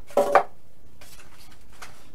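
A polystyrene foam stand being handled: a short, squeaky knock of foam against foam and the table about a quarter second in, followed by faint light taps and rubbing.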